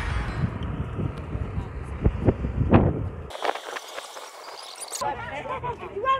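Outdoor walking sound with low rumble and irregular thumps on a phone microphone, followed about five seconds in by indistinct voices of people talking nearby.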